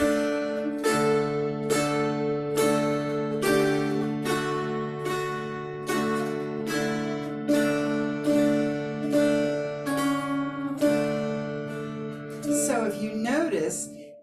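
Two mountain dulcimers strummed together, playing a slow round tune over a steady drone, about one strum every second. Near the end the last chord rings out under a brief voice.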